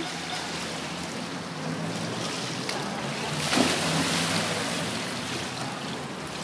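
Swimming-pool water splashing and sloshing as people paddle through it, with a louder burst of splashing about three and a half seconds in.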